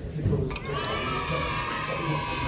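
High-pitched cheering of young voices. It starts about half a second in and is held as one long, steady sound.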